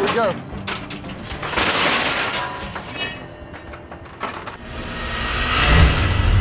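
Steel chain-mesh oyster dredge full of oyster shell and crushed-concrete rock clanking and rattling as it is winched up over the boat's rail onto the deck. About four and a half seconds in, a rising whoosh builds into a deep boom: the start of a music sting for a logo transition.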